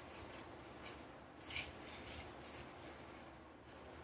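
Faint sniffing as a woman smells perfume on her wrist, a few short hissy breaths, the clearest about a second and a half in, with slight rustling of skin and clothing.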